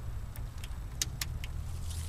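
A few light metallic clicks and clinks as hands work on fittings and wiring in a car's engine bay, about five in the first second and a half, the sharpest about a second in, over a steady low hum.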